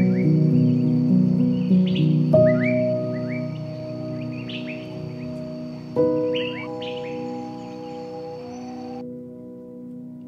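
Soft, slow piano music with held chords, new chords struck about two and a half and six seconds in, under bursts of small birds chirping. The birdsong and the high background cut off suddenly about nine seconds in, leaving only the music.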